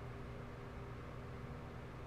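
Faint steady low hum of room tone with a few even tones in it. No distinct events.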